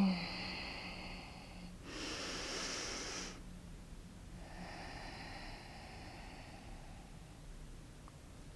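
A woman breathing audibly during one slow breath cycle: a louder breath about two seconds in, then a softer, longer one after the midpoint.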